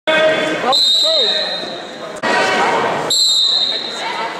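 Referee's whistle blown twice, a high steady tone each time lasting about a second and a half, the second blast starting about three seconds in. Shouting voices in the gym, with thuds from the mat, sound under it.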